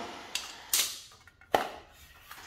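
Handling noises from a glued-up wooden hexagon frame made of mitred 2x4 segments being lifted and shifted on the work surface: a couple of light scrapes, then one sharp knock about halfway through.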